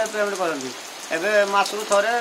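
A man talking, pausing briefly just before the middle, with steady rain falling behind his voice.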